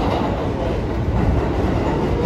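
Loud, steady noise of a busy city street with a deep, irregular rumble, picked up by a handheld phone carried while walking in the rain. It starts abruptly.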